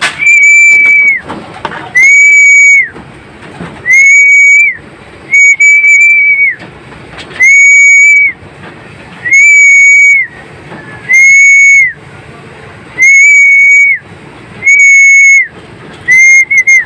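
A hand whistle blown in nine loud, even blasts, each under a second and ending with a slight drop in pitch, about one every two seconds: a pigeon keeper's feeding call to the loft birds.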